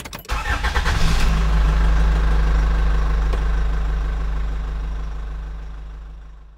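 Intro logo sound effect: a quick run of mechanical clicks, then a deep rumbling hit with a ringing top that holds and slowly fades away.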